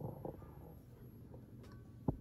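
Quiet room tone: a faint low background hum, with a faint tick near the end.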